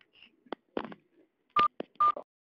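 Telephone keypad beeps: one short, loud beep about one and a half seconds in and another right at the end, among faint clicks and a brief murmur of voice over the phone line.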